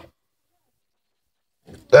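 Near silence, then a voice starts speaking near the end.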